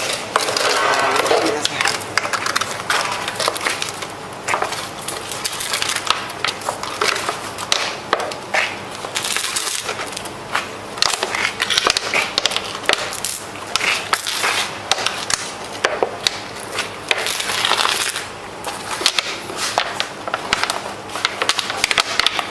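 Dense, irregular crunching and crackling that runs on with many sharp clicks, with a brief voice near the start.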